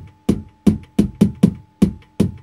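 Vermona Kick Lancet analog kick drum synthesizer triggered by hand, about six kicks in two seconds in an uneven rhythm, each a sharp click with a short low body that dies away. Its FM is set in the LFO range, so each kick comes out slightly different, moving in pitch and in how much bass it has.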